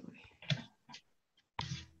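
A few faint, separate computer mouse clicks, heard over a video-call line, with a louder short burst near the end.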